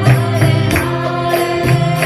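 Harmonium playing sustained reedy chords for a devotional kirtan, with voices chanting the mantra. A steady percussive beat of about two strikes a second, with a bright metallic shimmer, runs under it.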